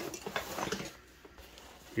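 Nylon pack fabric and webbing being handled, with faint rustling and a few light clicks during the first second or so.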